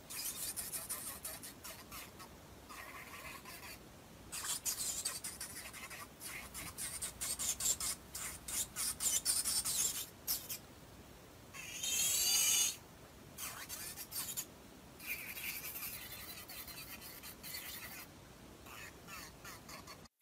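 Electric nail drill's bit filing a dip-powder nail: a high rasping hiss in short passes that start and stop, with a brief wavering whine about twelve seconds in.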